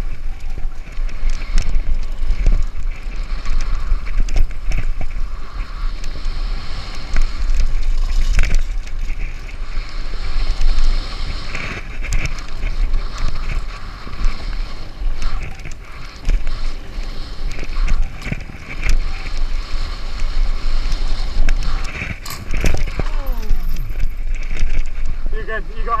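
Mountain bike riding fast down a dirt trail, heard from a bike-mounted camera: a heavy wind rumble on the microphone with tyre noise and frequent rattles and knocks from the bike over bumps.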